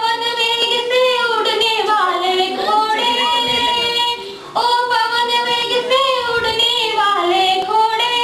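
A single high voice singing a melody in long held notes, with a short break just after four seconds in.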